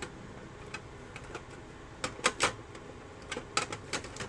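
Small hard-plastic toy clicking and tapping as it is handled: a few sharp clicks about halfway through and another short cluster near the end.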